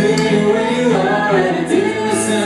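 Live indie rock song heard from the audience: a male singer's drawn-out vocal line over guitar, loud and continuous.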